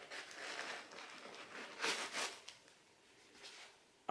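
Faint rustling of stuffing paper being pulled out of a new sneaker, with two louder rustles about two seconds in before it dies down.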